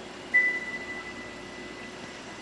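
A single high ringing tone that starts suddenly a moment in and fades away over about a second and a half, over a faint steady hum.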